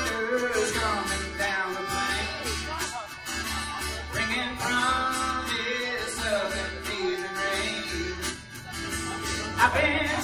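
Live string band playing an instrumental passage: fiddle melody over acoustic guitar and upright bass.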